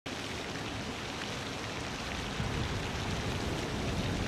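A pond spray fountain throwing water up and splashing it back onto the surface, a steady wash of falling water.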